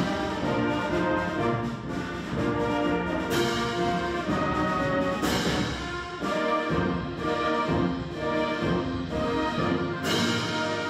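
A high school concert band playing a piece, with brass prominent in sustained chords and moving lines, and a few sharp accents.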